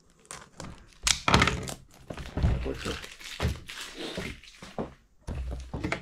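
Plastic-wrapped cardboard perfume box being cut open with a knife: irregular scraping and crinkling of the wrap, with the box knocking on the tabletop several times.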